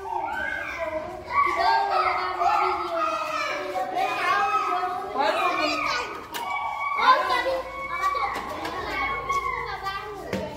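Many young children's voices at once, talking and calling out over one another without a break.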